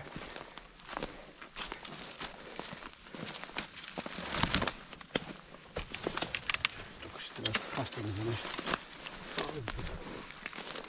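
Footsteps crunching and rustling through deep dry fallen leaves and twigs, irregular steps on a steep uphill scramble.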